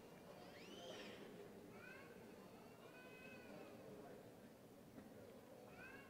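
Near silence: hall room tone with a few faint, short rising-and-falling high voice calls, about one a second early on and one more near the end.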